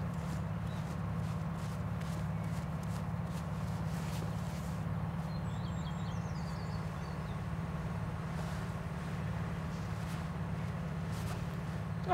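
Gloved hands scraping and digging in loose, dry field soil, with soft scratchy strokes early on and again near the end, over a steady low drone. A few brief bird chirps come about five seconds in.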